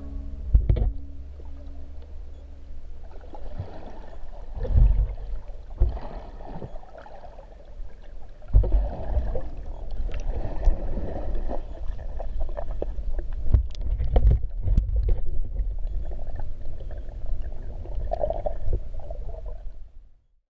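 Muffled sound of a camera underwater: water sloshing and gurgling around it, with irregular low thumps.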